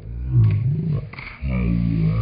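A low-pitched voice making two drawn-out vocal sounds without words, the pitch wavering up and down.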